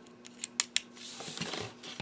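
A few sharp little plastic clicks, three close together about half a second in, as LEGO pieces are pressed back into place in a small LEGO model. Then a faint rubbing of plastic being handled.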